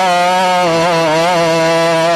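A man's voice holding one long chanted note, steady in pitch with a slight waver, in the drawn-out melodic style of a sermon's refrain.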